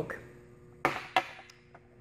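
Two sharp, light clicks about a third of a second apart, followed by a few fainter ticks, over a faint steady hum.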